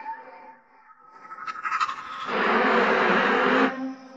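Dramatic TV background score with a loud rushing sound effect that swells about halfway through and cuts off suddenly just before the end, a low steady tone held beneath it.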